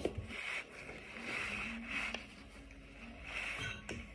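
A paper towel rubbed across a countertop in a few soft strokes, sweeping spilled seeds along the surface.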